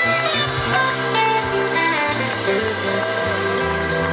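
Live rock band playing an instrumental passage: electric guitar notes bending up and down in pitch over a stepping bass line.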